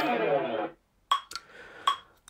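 Guitar notes playing back from a lesson video, which cut off under a second in. Then two sharp metronome clicks, just under a second apart.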